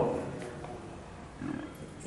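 A pause in a man's speech: his voice trails off, then low room tone with a brief faint vocal sound about a second and a half in.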